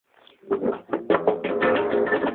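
Live rock band music starting about half a second in, with guitar chords struck in quick succession.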